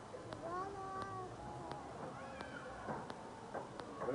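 Faint, far-off voices calling out "Allahu Akbar" in long, drawn-out cries, with the pitch rising and then held. There are two or three calls.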